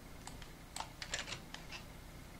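Faint clicking of computer keys being typed: a quick run of several sharp taps, densest about a second in.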